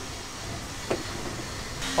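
Steady low background noise of a workshop room, with a single short knock about a second in.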